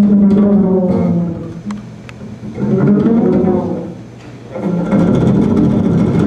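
Double bass played pizzicato, fingers plucking the strings, in three short melodic phrases with brief drops in loudness between them.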